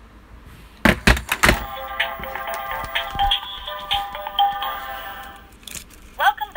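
Electronic password journal toy unlocking after its spoken password is accepted: a few clunks about a second in, then a short electronic jingle of steady tones that plays for about four seconds.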